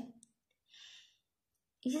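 A woman's speaking voice breaks off and then resumes. In the short pause there is one faint, brief intake of breath, about a second in.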